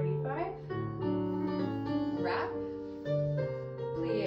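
Piano music playing a ballet class accompaniment for a barre exercise, with held chords and a moving melody line.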